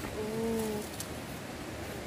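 A dove cooing: one long, low note, rising slightly and falling, lasting under a second.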